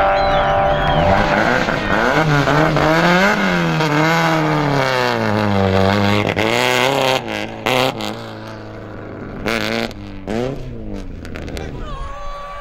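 Rally car engine revving, its pitch rising and falling several times over the first seven seconds, then running lower and steadier with a few sharp knocks near the end.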